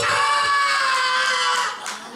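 A singer's voice through the PA holding one long note at the end of a song, sagging slightly in pitch and cutting off just before the end, followed by a brief knock.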